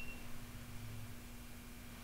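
Faint steady electrical hum and room tone; at the very start, the tail of a short, high electronic beep from a Garmin Echomap Plus chartplotter as its OK key is pressed to restart it.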